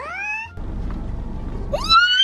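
A cartoon Minion's squeaky voice crying "What?" twice, each cry sliding sharply up in pitch, one at the start and one near the end.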